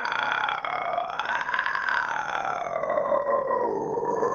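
A metal vocalist's vocal fry warm-up: one long, unbroken rattling note from the throat whose vowel slowly shifts.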